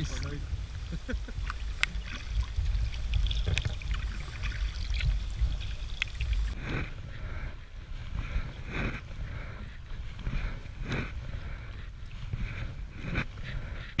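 Kayak paddling: a double-bladed paddle dipping and pulling through calm water in regular strokes, about one a second in the second half, with a low rumble on the microphone in the first half.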